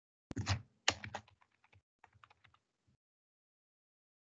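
Typing on a computer keyboard: a quick run of keystrokes lasting about two and a half seconds, the first few loudest and the rest fainter, entering a short word.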